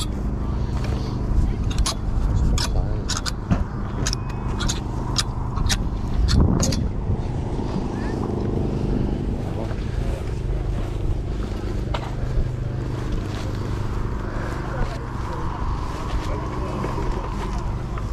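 Clothes hangers clicking against a rail as garments are pushed along it, a quick run of sharp clicks over the first seven seconds. Wind rumbles on the microphone throughout over a steady low mechanical hum.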